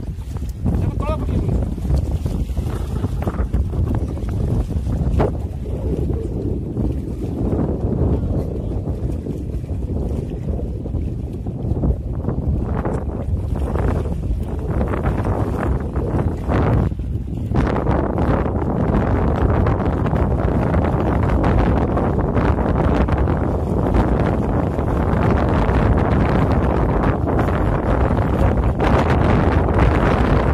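Wind buffeting the microphone over open water, a steady low rumble that grows fuller and a little louder just over halfway through.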